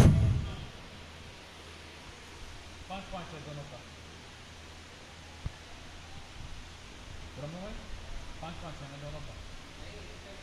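Faint, distant voices calling out now and then over a steady low hum and hiss of field ambience, with one sharp click about halfway through.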